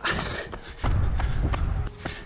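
A runner's footsteps on tarmac at race pace, picked up by a handheld camera: even thuds about three a second. A low rumble joins a little under a second in.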